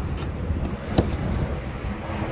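Tesla Supercharger connector pushed into a Model 3's charge port, seating with a single sharp click about a second in, over a steady low background rumble.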